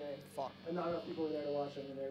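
A person talking over the steady electrical buzz of a guitar amplifier left on between songs.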